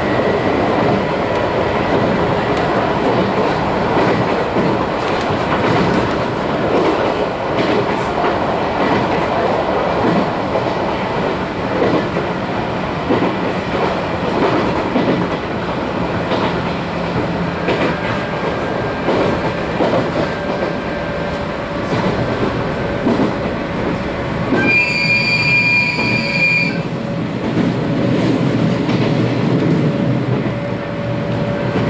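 Running noise of a JR 719-series electric train heard from inside the car: a steady rumble of wheels on rails with irregular clicks over the rail joints. About 25 s in, a high, steady tone sounds for about two seconds and stops abruptly.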